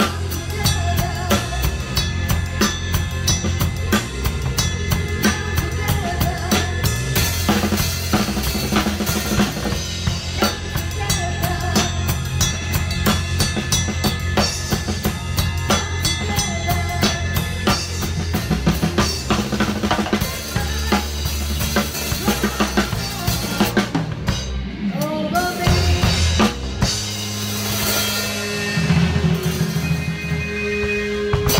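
Rock drum kit with Sabian cymbals played live with a band, heard close to the kit: bass drum, snare and cymbals keeping a steady beat over bass and guitar. About 24 seconds in the beat briefly drops out, and the last few seconds have fewer drum hits over held low notes.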